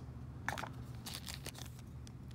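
Faint handling noise: a few light clicks and crinkles as a small plastic zip bag is picked up and held under a hand loupe, over a faint steady low hum.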